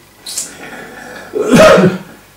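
An elderly man sneezes once, loudly, about a second and a half in, after a short sharp intake of breath.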